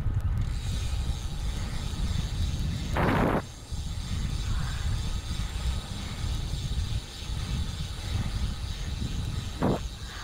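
Wind buffeting the microphone as a bicycle rides along a paved trail, a steady low rumble, with a short rushing noise about three seconds in and another near the end.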